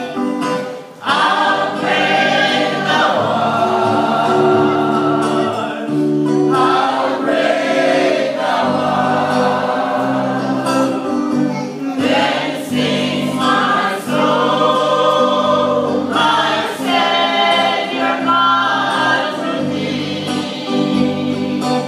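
Voices singing a gospel hymn together, with sustained low notes underneath; the singing pauses briefly about a second in, then carries on.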